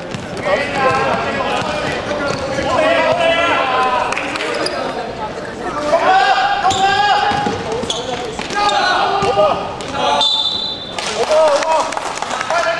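A basketball bouncing on an indoor court, with players' voices calling out in a large, echoing sports hall. A short high squeak comes about ten seconds in.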